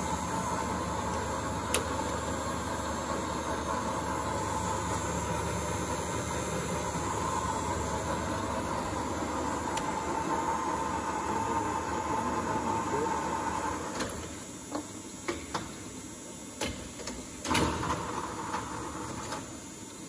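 Ernault Somua HN500 x 1500 parallel lathe running, with the steady machine noise of its gearing and carriage feed. About fourteen seconds in it drops away as the machine winds down, followed by several sharp clunks of its control levers being shifted.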